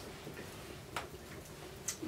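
Quiet room tone with a faint tick about a second in.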